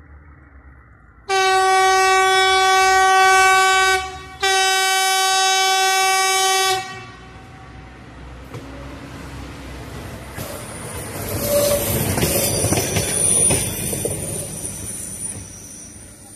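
Diesel railcar's horn sounding two long blasts on one steady note, then the railcar approaching, its rumble of engine and wheels on the rails growing louder, with a thin high squeal from the wheels near the end.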